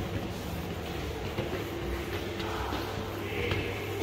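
A steady low machine hum with faint higher tones, and a few light footsteps on stone stairs.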